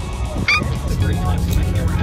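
A woman's short, high-pitched excited squeal about half a second in, followed by the steady low drone of a bus engine from about a second in.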